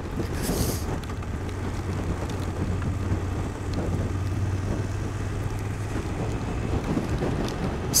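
2024 BMW F800 GS parallel-twin engine running at low revs as the bike rolls along at about 20 mph, with wind rushing over the microphone. The steady low engine note fades near the end.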